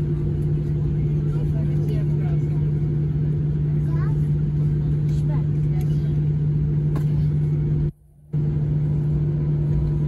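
Airliner cabin noise during taxi: a steady low hum of the engines and cabin air, with a low drone running under it. The recording cuts out briefly about eight seconds in.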